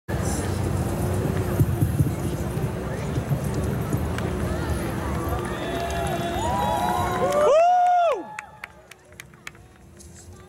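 Outdoor festival crowd noise and music over a loudspeaker system, with a melody of sliding notes rising in the second half. The sound cuts off abruptly about eight seconds in, the last note dropping sharply, leaving a few faint clicks.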